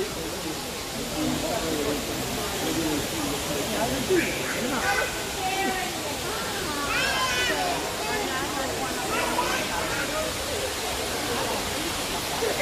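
Scattered chatter of other visitors at a distance over a steady rushing hiss of background noise.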